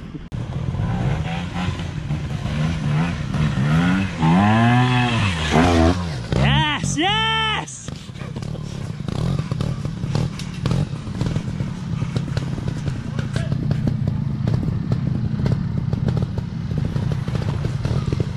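Trials motorcycle engine revved up and down in pitch several times, with two sharp high revs a few seconds in, then running on at low revs with frequent clatter as the bike works over roots.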